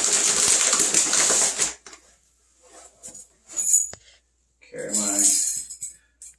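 Plastic bag of pine-flake bedding crinkling and rustling loudly as it is gripped and pulled at, for nearly two seconds. Then a few small clicks and a brief metallic jingle of keys, and a short murmur of a voice near the end.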